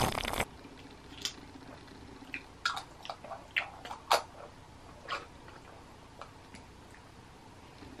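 A drink of peach juice taken straight from a glass bottle stops about half a second in, followed by a scattered series of faint clicks and mouth smacks as the juice is tasted and the bottle handled.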